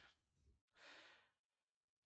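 Near silence, with one faint, short intake of breath about a second in.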